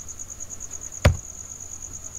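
A single sharp click about a second in, over a steady high-pitched whine with a fast flutter.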